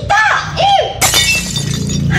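A drinking glass shattering about a second in, a sudden crash followed by briefly ringing shards, with a voice just before it.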